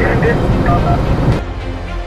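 Road and engine noise inside a car driving at very high speed, a dense rumble and hiss under indistinct voices. About one and a half seconds in the sound changes abruptly: the hiss drops away and a steadier low rumble remains.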